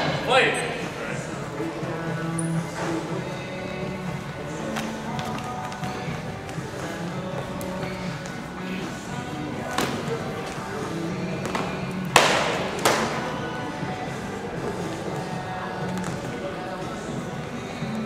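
Music with held notes and faint voices in a large gym, broken by a few sharp knocks of training swords striking during a sparring bout. The loudest are two knocks close together about twelve seconds in.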